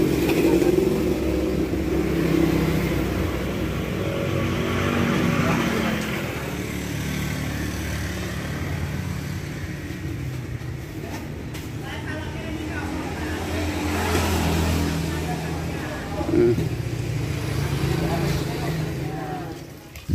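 Motor vehicle engines running with a steady low hum that swells and fades over several seconds, with voices faintly underneath.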